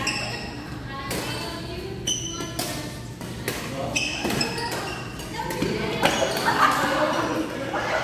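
Badminton doubles rally in an indoor sports hall: a string of sharp racket hits on the shuttlecock and the players' footwork on the court floor, with voices in the background.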